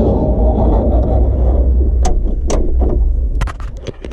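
Skid steer's bifold cab door being worked by hand: a scraping, rumbling slide for about two and a half seconds, then several sharp clicks and knocks as it moves into place near the end.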